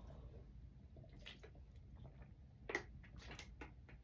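Near silence in a small room, broken by a few faint short clicks and taps: one about a second in and several close together near the end.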